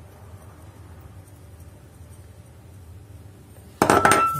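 Low steady background hum, then near the end a sharp, ringing clink as the small glass salt jar is set down.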